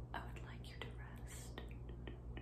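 Soft close-microphone whispering broken up by a run of short mouth clicks and lip sounds.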